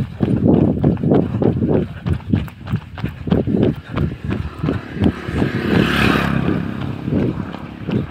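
Running footsteps on a paved road, an even beat of about two to three thuds a second, with the rustle of a phone jolting in the hand.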